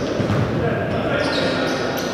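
Futsal match noise echoing around a sports hall: shouting voices of players and onlookers, with thuds of the ball on the hard court floor.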